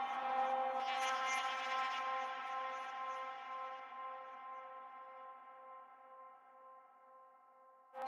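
Intro of a hardcore techno track: a sustained, bell-like synth chord with a tone pulsing about twice a second and no drum beat. The chord fades away over several seconds, and the phrase strikes up again at the very end.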